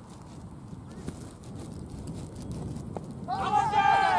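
Cricket players shouting loudly, several voices at once, breaking out near the end just after a faint knock of bat striking ball.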